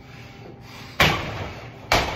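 Boxing-gloved punches landing on a hanging heavy bag: two hard thuds a little under a second apart, the second near the end.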